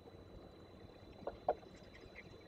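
Two short knocks a quarter of a second apart, about a second and a quarter in, from a falcon tearing at prey on the nest-platform ledge, over a faint steady background hiss and a thin high hum.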